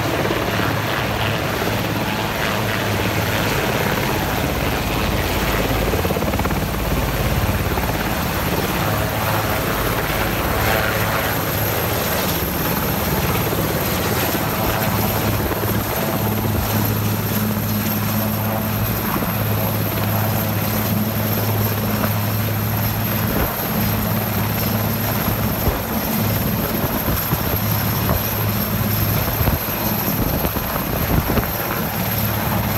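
Sikorsky VH-3D Sea King helicopter hovering low on its landing approach: a loud, steady rotor and engine noise with a high steady whine over it.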